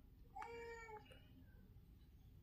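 A single faint, short high-pitched cry lasting about half a second, starting a little under half a second in, against near silence.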